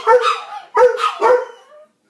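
A Doberman giving three drawn-out, pitched barks in quick succession, the last one sliding upward at its end.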